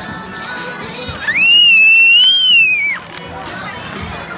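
A long, loud high-pitched squeal, rising at the start, holding steady, then cutting off suddenly after about two seconds, over the babble of a crowded room.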